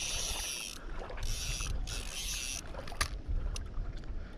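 Spinning fishing reel buzzing in three short bursts of under a second each, with a single click about three seconds in, while a hooked carp is fought toward the bank.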